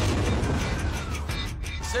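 Tense film-trailer score over a deep, steady low rumble, with a faint gliding tone above it.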